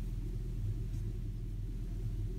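A steady low background hum holding the same level throughout, with no distinct clicks or other events.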